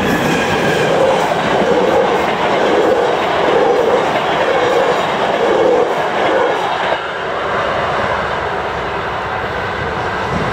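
Beneluxtrein passenger coaches passing close at speed: steady rolling noise with a clickety-clack that surges about once a second as each coach goes by. It drops a little about seven seconds in as the last coaches pass.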